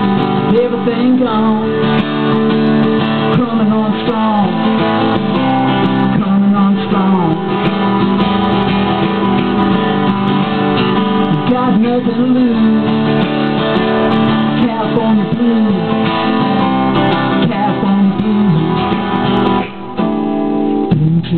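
Acoustic guitar played through an instrumental break in a blues song, steady chords under a melody line whose notes bend up and down.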